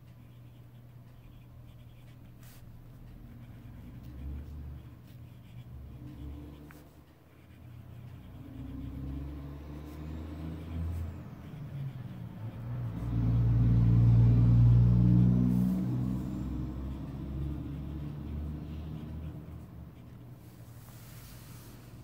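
Low rumble of a passing motor vehicle. It builds a few seconds in, is loudest a little past the middle, then fades away.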